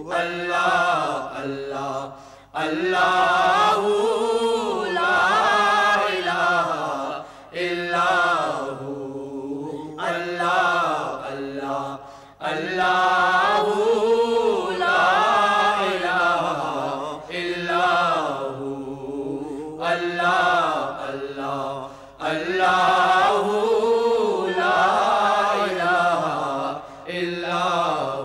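Male voices singing a naat, an Urdu devotional song, in long melodic phrases of about five seconds each with brief breath pauses between. No instruments can be picked out under the voices.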